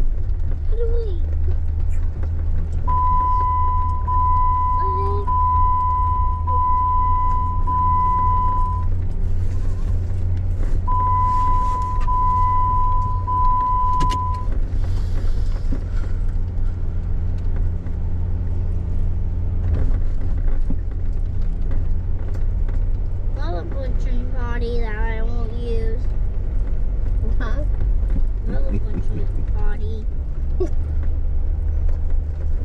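A vehicle driving over beach sand: a steady low rumble of engine and tyres. Twice a high electronic beep sounds as a run of long, evenly repeated tones. Near the end a brief wavering voice is heard.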